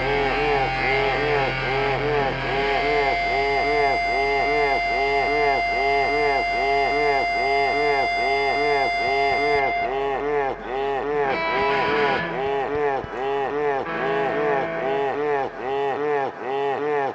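Live rock band in a noisy, effects-heavy passage: a fast, evenly repeating warble with steady held tones over it that drop out about ten seconds in.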